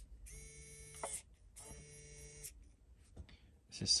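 SwitchBot Bot's small geared motor whirring twice, each run steady and just under a second long, as it drives its push arm out and back.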